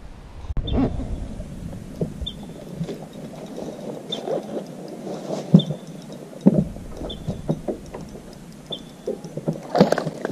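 Irregular knocks and thumps of gear and footing on a fishing boat, with a short high beep repeating about once a second. A louder run of knocks comes near the end.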